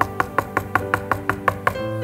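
Rapid knocking on a wooden pulpit, about five or six knocks a second, stopping near the end, over a soft keyboard holding sustained chords.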